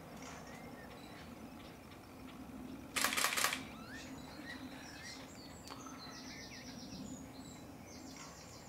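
A camera shutter firing a quick burst of clicks about three seconds in, the loudest sound here. Faint chirps and calls of small birds and a low steady hum run beneath it.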